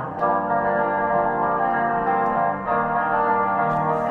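Playback of a recorded guitar part run through heavy effects, heard as steady sustained chords rather than plucked notes, starting abruptly and changing chord about two and a half seconds in.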